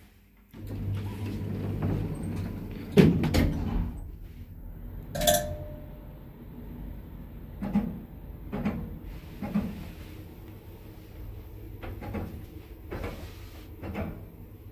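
Ayssa passenger lift from 1996: its sliding car doors rumble shut after a floor button is pressed, with a loud knock about three seconds in and a sharp click a couple of seconds later. The car then runs with a steady low hum and a series of softer knocks.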